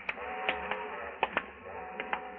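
Radio-drama sound-effect footsteps: a few sharp steps, loosely in pairs, under a quiet held chord of background music.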